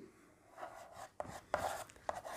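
Chalk writing on a blackboard: a few faint taps and short scratches as the letters are formed.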